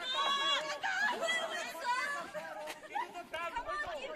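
Indistinct chatter of several voices talking at once.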